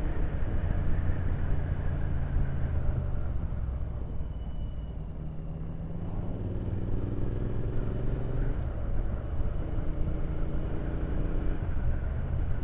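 Royal Enfield Interceptor 650's parallel-twin engine running under way, heard from the rider's position. It eases off about four seconds in, then pulls again with its pitch rising.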